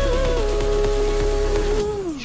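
Background music: a long held note over a low bass, with the bass dropping out near the end.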